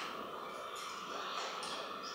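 Room tone in a pause between speech: a steady hiss with a faint steady tone running through it, and a few faint clicks.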